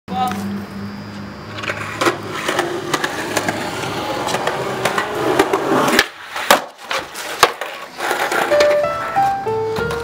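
Skateboard wheels rolling on concrete with small clicks, then a sharp crack of the board about six seconds in, followed by two hard knocks as board and rider come down. Near the end a music track starts with a stepwise rising run of notes.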